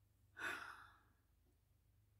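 A woman's sigh: one breathy exhale lasting about half a second.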